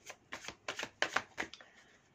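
A deck of tarot cards being shuffled by hand: a quick string of short papery rasps, about six a second, stopping shortly before the end.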